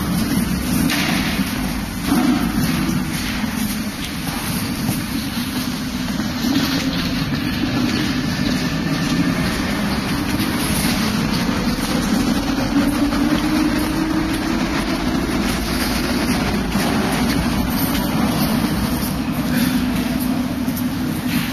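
Metro escalator machinery running: a steady, continuous low mechanical rumble.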